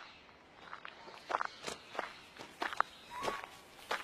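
Faint, irregular footsteps: a dozen or so light crunching steps, a few with a brief squeak.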